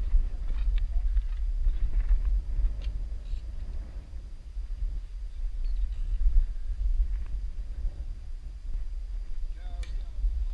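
Wind buffeting the camera microphone as a steady low rumble, with a few faint scuffs and clicks of climbing on bare granite.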